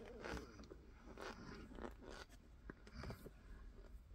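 Faint crunching squeaks from a finger pressing into a packed mound of cornstarch mixed with soap. There are about five short, irregular crunches.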